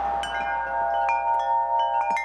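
Tubular wind chime ringing: its tubes are struck about five times, lightly and irregularly, and their clear overlapping tones ring on.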